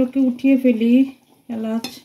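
A plastic spoon stirring a simmering curry in a frying pan, under a woman's voice in short bursts, once in the first second and again briefly near the end.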